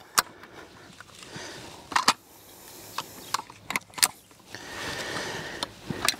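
Metal frame of a folding kayak cart being unfolded by hand, its joints and spring-button latches clicking into place: a few sharp clicks spread over the seconds, over a faint rustle of handling.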